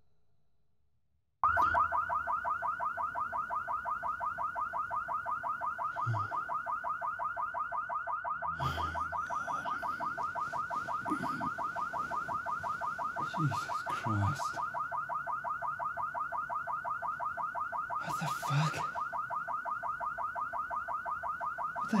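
A car alarm starts suddenly about a second and a half in and keeps sounding, a loud tone pulsing rapidly and steadily several times a second.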